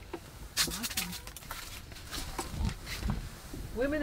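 Scattered clicks and rustles of a short ice-fishing rod and reel being handled just after a fish is landed. A voice starts near the end.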